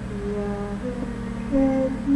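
A woman humming a slow wordless melody in long held notes over a steady low musical backing.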